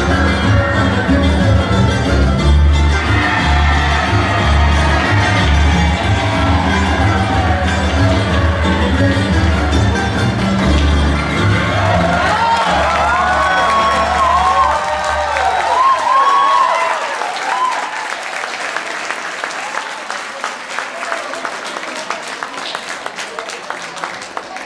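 Recorded dance music played over a loudspeaker, with a strong bass beat, ending about two-thirds of the way through. Audience applause follows.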